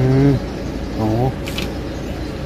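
A man's voice: a long drawn-out exclamation of amazement, "o-ho", then a short voiced sound about a second in, over a steady low background rumble.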